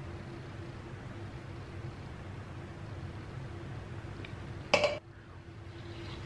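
Quiet room tone with a faint steady hum, broken by one short, sharp sound about five seconds in.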